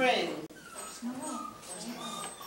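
Voices: one voice trails off with a falling pitch in the first half second, followed by faint, scattered high-pitched voices.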